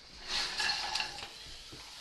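Thinly sliced cauliflower tipped into a stainless steel frying pan: a brief scattered rustle and patter lasting about a second, then it dies down.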